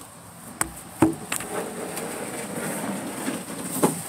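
Handling noise close to the microphone: a few sharp knocks about half a second and a second in, then a steady rubbing scrape, with another knock near the end.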